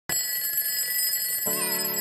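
Alarm-clock ringing sound effect, a steady high ring, joined about one and a half seconds in by a held musical chord.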